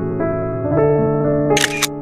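Background electric piano music playing held chords, changing chord partway through. Near the end, a short camera-shutter-like click sound effect.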